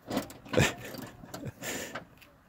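A metal wrench clicking and knocking against parts inside a car's open liftgate, with a louder clack about half a second in and a short rustle near the end.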